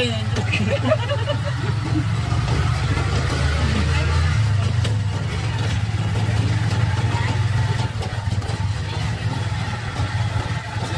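A vehicle's engine runs with a steady low rumble while riding along, with faint voices near the start.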